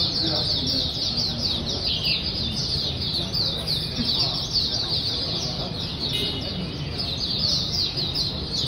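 Caged oriental white-eyes (mata puteh) singing: an unbroken, rapid stream of high, downward-slurred chirping notes, several a second, over a low murmur of background chatter.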